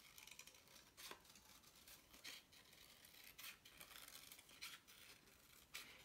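Scissors snipping through thin cardboard, faint short cuts about once a second.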